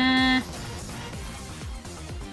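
A single held vocal note that stops about half a second in, over quiet background electronic music with a steady beat.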